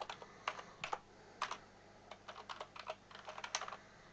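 Computer keyboard being typed on: irregular key clicks in quick runs, with a short lull near the middle.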